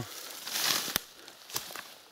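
Footsteps moving through cut birch branches and leafy brush: a rustle of leaves, then one sharp crack about a second in and a few faint clicks.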